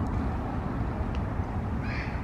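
Steady low rumble of wind buffeting the camera microphone, with a short high chirp near the end.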